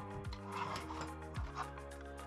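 Background music with a steady beat: a low drum hit about once a second over sustained instrumental chords.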